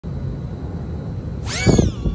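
A micro FPV quadcopter's tiny brushless motors spin up with a high whine as it takes off, the whine falling in pitch as it flies away. A low rumble runs underneath before the takeoff.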